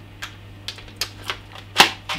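A small clear plastic packet of nail-in cable clips being handled, giving about five sharp plastic clicks and crinkles, the loudest near the end.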